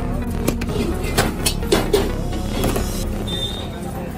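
A plate knocks and clatters a few times on a steel counter as it is flipped over to turn out moulded rice, over a steady low rumble.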